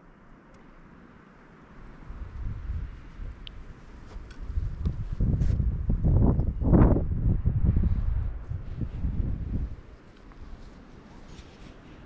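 Wind gusting against the microphone: a low, uneven buffeting rumble that builds from about two seconds in, is strongest just past the middle and dies away near the end.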